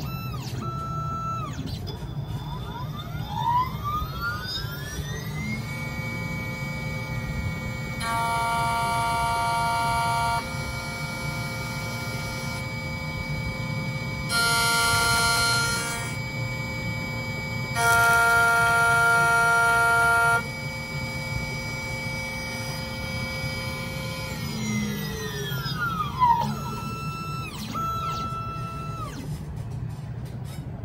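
Xhorse Dolphin XP-005L automatic key cutting machine running its cutting calibration with a 2.5 mm cutter. Its motor whine rises in pitch about three seconds in, holds steady with three louder stretches of a couple of seconds each, and falls away near the end. Short motor whirs come near the start and the end.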